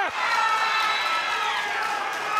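Crowd cheering a submission finish, with one long high shout held over the noise that drops in pitch near the end.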